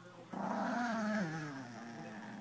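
Chihuahua growling: one long growl starting about a third of a second in, slowly dropping in pitch and fading.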